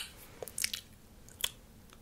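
Close-miked ASMR mouth sounds: a few short, sharp, wet clicks, a small cluster about half a second in and a single one about a second later.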